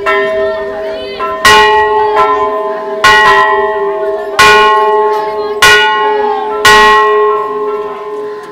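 Hindu temple bells struck about six times, roughly a second and a half apart, each strike ringing on and overlapping the one before.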